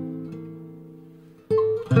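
Jazz guitar: a held chord rings and slowly dies away, then new plucked notes come in sharply about a second and a half in.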